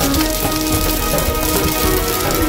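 Vermicelli toasting in butter in a pot, a steady crackling sizzle as it browns while being stirred. Background music with sustained notes plays over it.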